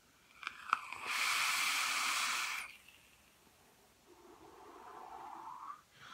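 Vaping on an e-cigarette: a couple of small clicks, then a loud airy hiss for about a second and a half as vapour is drawn through the atomizer, and near the end a softer, rising exhale that blows out a thick cloud of vapour.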